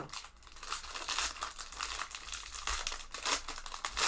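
Foil wrapper of a 2019-20 SP Game Used hockey card pack crinkling in the hands as it is worked open, a continuous run of irregular crinkles.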